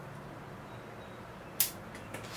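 A single sharp snip of bonsai pruning shears cutting through a thin ficus twig, about one and a half seconds in, over a quiet background.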